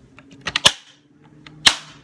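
Plastic blade insert being snapped into a Tupperware Mandolin slicer: a few light clicks, then two sharp snaps about a second apart.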